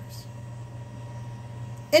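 A steady low hum under faint room noise during a pause in speech; a woman's voice starts again right at the end.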